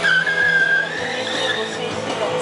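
Motorcycle rear tyre squealing on asphalt as the KTM 125 Duke slides through a stunt turn. It is a high, steady squeal that starts abruptly, is strongest for about a second and then fades. The 125 cc single-cylinder engine runs underneath.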